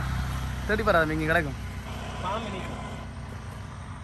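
A low, steady engine hum, as from a nearby motor vehicle, that fades away after about two seconds, with a man's voice speaking briefly over it.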